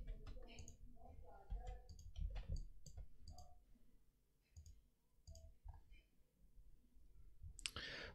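Faint, irregular computer mouse clicks, most of them in the first few seconds and only a few after, over a faint steady hum.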